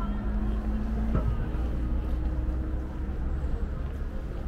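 Steady low rumble of city traffic, with a vehicle engine's even hum.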